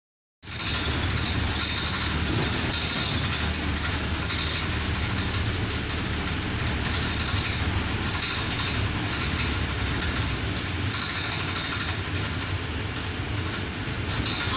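Wright Eclipse Gemini 3 double-decker bus on the move, heard from inside on the upper deck: a steady low engine drone mixed with road and body noise, starting about half a second in.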